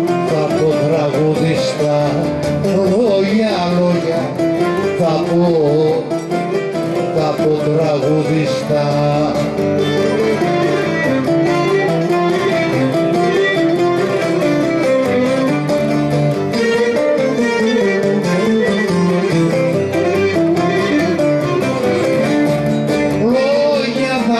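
Cretan folk music played live on plucked string instruments, with a wavering, ornamented melody line running above the steady accompaniment.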